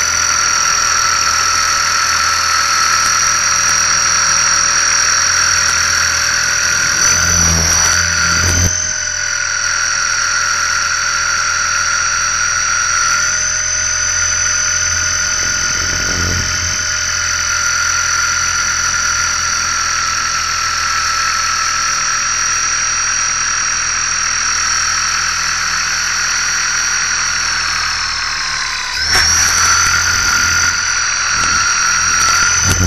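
An RC collective-pitch helicopter's motor and belt drive whining steadily, heard through an onboard keychain camera, with low rumbling thuds and brief dips in pitch about eight seconds in and again near the end. The helicopter is running on with no throttle control, which the pilot puts down to radio interference.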